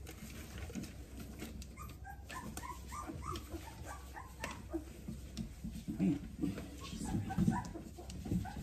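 Four-week-old Australian Labradoodle puppies whimpering in a run of short, high squeaks, with scattered clicks and rustling as they move over newspaper around a metal feeding dish. A few low, soft bumps near the end are the loudest sounds.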